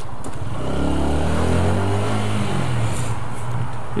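Honda CBR125's single-cylinder four-stroke engine pulling away, its pitch rising for about a second, then falling back as the throttle eases off.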